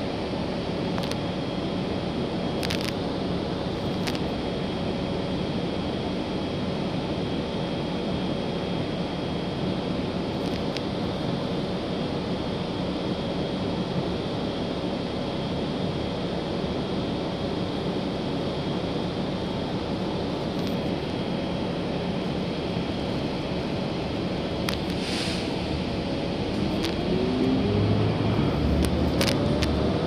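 Cabin noise inside a 2018 Gillig Low Floor transit bus on the move: a steady rumble of engine and road noise with a few scattered clicks. Near the end it gets louder and a whine rises in pitch as the bus picks up speed.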